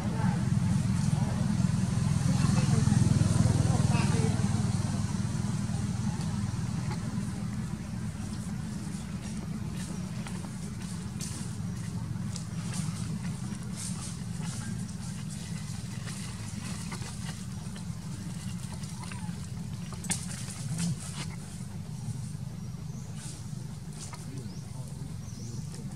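A steady low rumble, loudest in the first few seconds and then easing off. Scattered light crackles of dry leaves come through as the macaques shift on the leaf-littered ground.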